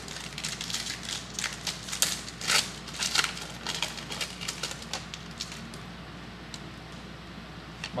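Wrapper of a 2012 Panini Prestige football card pack crinkling and tearing as it is opened by hand. It is a quick run of crackles that thins out after about five seconds.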